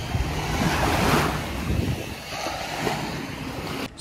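Gusty wind buffeting the microphone over the wash of surf on a beach, cutting off abruptly near the end.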